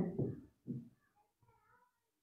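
A man's voice trailing off at the end of a word, then faint short squeaks of a marker writing on a whiteboard.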